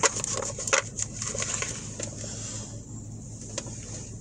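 Light rustling and scattered clicks of tarot cards being handled and gathered up after the deck spilled, over a low steady hum.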